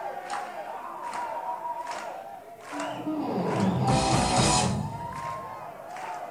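Live rock band playing a slow song, from a bootleg recording in a hall: a steady drum beat of about one hit every 0.8 s under a held guitar line. About three and a half seconds in it builds to a loud crash with heavy bass, then settles back.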